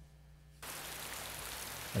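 A steady hiss that switches on suddenly about half a second in, after near silence with a faint low hum.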